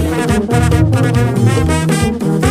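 Haitian rara band music: horns play a repeating phrase over a steady drum and percussion beat.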